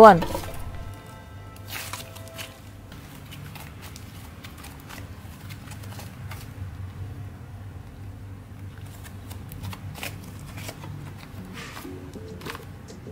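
Thick butter slime being pressed, stretched and folded by hand: a steady run of soft clicks, crackles and squishes as air bubbles pop in it.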